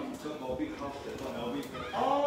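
Men's voices in indistinct conversation.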